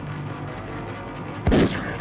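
A single gunshot about one and a half seconds in, sudden and loud with a short echo, over low sustained film score music.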